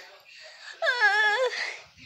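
A boy's voice making a drawn-out, wavering high-pitched wordless vocal sound about a second in, lasting under a second.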